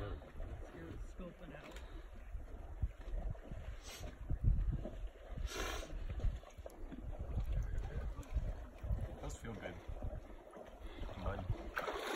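Wind rumbling on the microphone, with faint distant voices and a couple of brief rustles.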